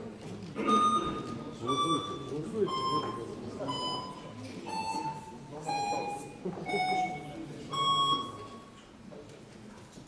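The electronic voting system sounds its signal while the vote is open: a series of eight beeps about a second apart, stepping down in pitch, with the last one higher again. Low murmuring voices run underneath.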